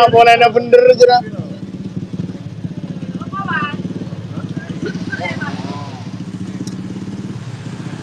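An engine idling steadily, a low even hum with fast regular pulsing, after a short burst of speech in the first second. Faint voices come and go over it.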